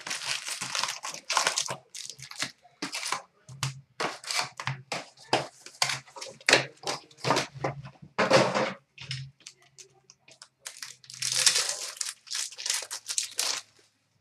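Crinkling and rustling of wrapped 12-13 Upper Deck Black Diamond hockey card packs and their cardboard box as the packs are pulled out and set down on a glass counter, in many short irregular bursts. A longer tearing rustle comes near the end as a pack is opened.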